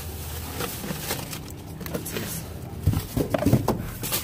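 Thin plastic bagging crinkling and rustling as a gloved hand rummages through bagged floral foam bricks, with a burst of louder crackling about three seconds in.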